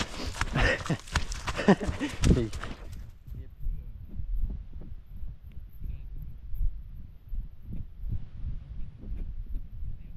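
A person laughing for the first three seconds, then footsteps on a snowy trail: a steady rhythm of low thuds picked up by a body-worn camera.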